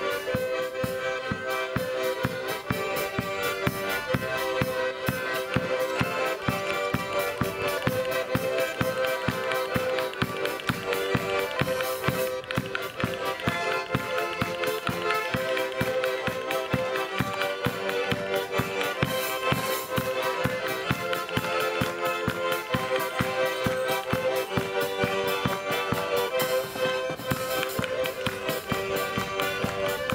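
A group of Lithuanian Stasiukas accordions playing a tune together, with a drum keeping a steady beat.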